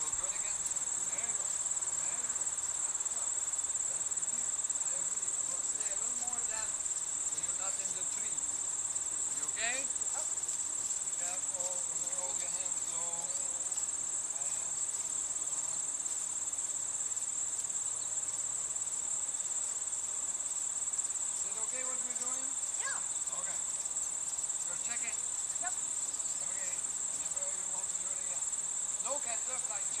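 Steady, high-pitched chorus of crickets, an unbroken shrill trill.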